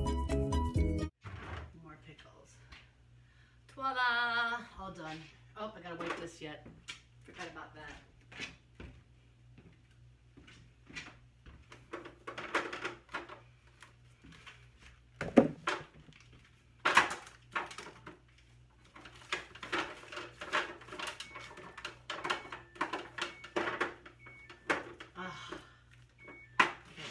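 Condiment bottles and jars knocking and clinking as they are taken out of and put back on a refrigerator's door shelves while the shelves are wiped down. The knocks are short, irregular and frequent in the second half.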